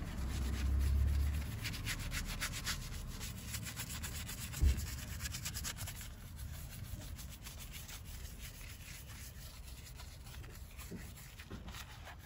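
Bristle wheel brush scrubbing a foam-covered alloy wheel in quick, repeated strokes, busiest in the first half and fainter toward the end. A single low thump sounds a little under five seconds in.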